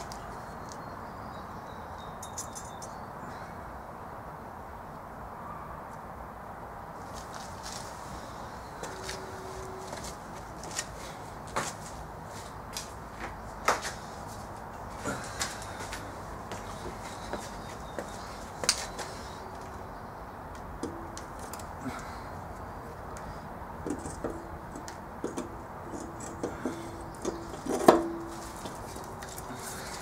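Scattered light clicks and knocks of hand tools and metal parts as the turbo manifold and turbocharger are fitted to the engine, over a steady background hiss. The loudest knock comes near the end.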